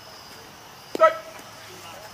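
A dog barks once, a single short, sharp bark about a second in.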